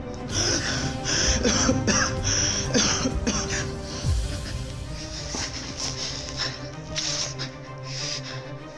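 Background music with a steady held drone, over which a man takes a run of loud, gasping breaths in the first three seconds or so; these fade out and the music carries on alone.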